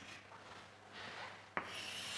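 Chalk scratching on a blackboard as a formula is written: faint strokes at first, then a sharp tap of the chalk about one and a half seconds in, followed by a louder stroke of scraping.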